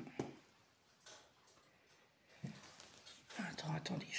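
A woman's voice, quiet and murmured, words indistinct, mostly in the second half.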